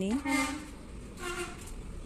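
A woman's voice speaking briefly, in two short bursts, over a faint low background rumble.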